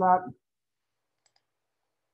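A man's voice ends a spoken question in the first moment, followed by near silence with one faint click a little over a second in.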